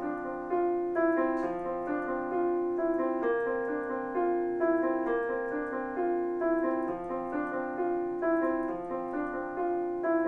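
Yamaha digital keyboard played with a piano sound: an instrumental intro of chords struck in a steady, repeating pattern.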